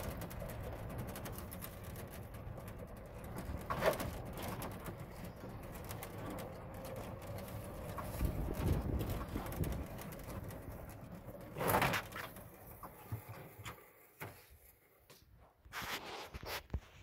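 Electric golf cart driving over rough farm ground: a steady low rumble and rattle that eases off and grows quieter near the end.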